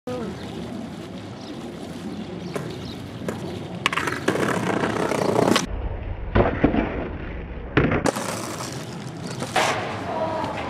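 Skateboard wheels rolling on pavement, broken by several sharp clacks of the board popping and landing. A muffled stretch with a heavy low rumble sits in the middle.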